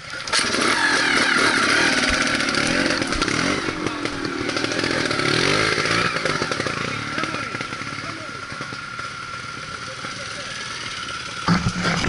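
Trials motorcycle engine revving hard, its pitch rising and falling over and over, loudest for the first several seconds and then easing off.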